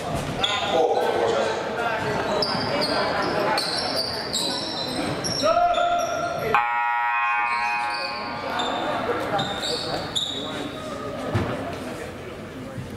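Basketball sneakers squeaking on a hardwood gym floor, with voices echoing in the large gym. A little past halfway, a buzzer sounds steadily for about a second and a half.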